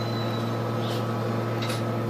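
Inside a Solaris Urbino 18 III Hybrid articulated bus standing still: the vehicle's machinery hums steadily and low with a constant higher whine. Two brief hisses come, about a second in and near the end.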